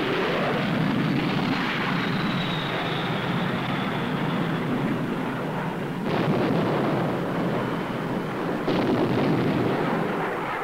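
750-pound bombs exploding in a string on a ground target under a continuous rumbling roar, with a faint falling whistle in the first few seconds. Sudden louder blasts come about six seconds in and again near nine seconds.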